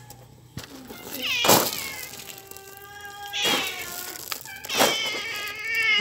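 Domestic cats meowing about four times, one call long and drawn out, begging for food.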